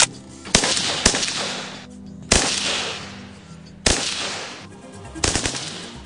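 Assault rifle shots fired in the open, about six at uneven intervals, each trailing off over about a second. Faint background music runs underneath.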